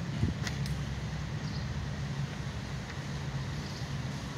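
Steady low hum of outdoor background noise, with a few faint clicks about half a second in.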